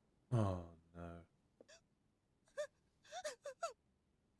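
Human vocal sounds: a loud low groan falling in pitch, a shorter one after it, then several short high-pitched whimpering cries near the end.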